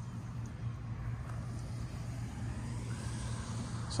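Steady low mechanical hum, unchanging throughout, with faint outdoor background noise.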